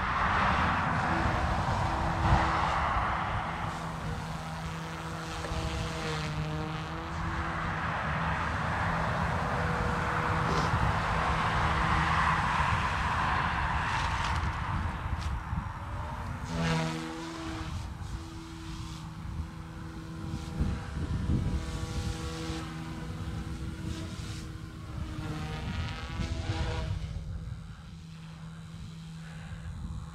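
OMPHOBBY M2 V2 micro electric RC helicopter in flight in idle up two, its tail motor reversed to quiet the tail. Its motors give a steady whine, and the rotor whoosh swells and fades as it manoeuvres.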